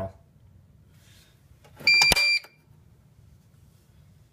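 Potter PFC-6006 fire alarm control panel's built-in sounder giving one short, high, steady beep of about half a second, with a sharp click partway through, as the panel finishes resetting and comes up in trouble.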